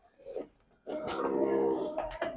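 A short faint sound about a third of a second in. Then, starting about halfway through, one drawn-out animal call lasting about a second.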